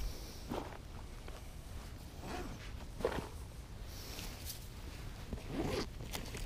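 A fabric bag being handled: a few short rasping zipper pulls and rustling of clothing, over a steady low rumble.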